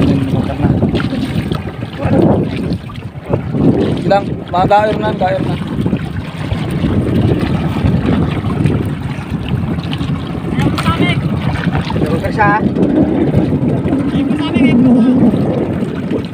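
Wind buffeting the microphone on an outrigger boat at sea, a steady noisy rush, with men's voices calling out briefly several times.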